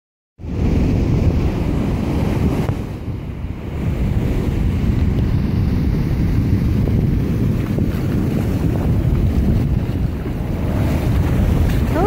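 Ocean surf washing up a sandy beach, a steady rush of foam and breaking waves, heavily overlaid by wind buffeting the microphone.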